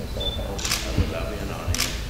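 Two short camera shutter clicks, under a second in and near the end, over soft speech as wedding vows are repeated, with a low thud about a second in.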